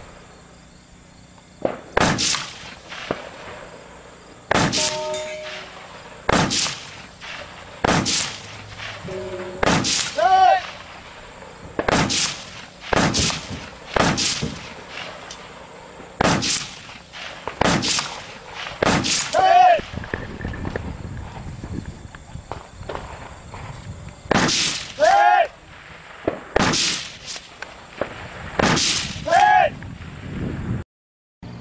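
Rifle firing a slow string of single aimed shots, one every second or two, each a sharp crack. A short ringing tone follows a few of the shots.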